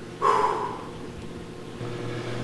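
A man's short, noisy breath a moment in, fading within about half a second, over a steady low hum.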